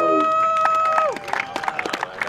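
Small crowd at a ballfield applauding and cheering. One long, held cheering call sounds over the first second and falls away at its end, while scattered hand claps build up through the rest.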